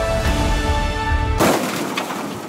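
Background music with held notes, cut off about one and a half seconds in by a sudden loud crash of noise that trails away: the drone hitting the snow.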